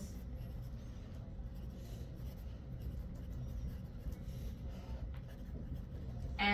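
Faint sounds of writing over a classroom's steady low hum.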